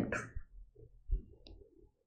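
A spoken word trails off, then a quiet pause with a few faint clicks and a short soft knock about a second in.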